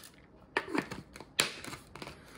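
Plastic cap being fitted and closed on a plastic supplement pill bottle: light plastic scrapes and taps, with one sharp click about one and a half seconds in.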